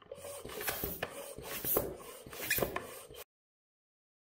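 XLC hand floor pump being pumped into a road bike tyre toward 110 psi: repeated strokes of rushing air and plunger noise, about one or two a second, cutting off suddenly about three seconds in.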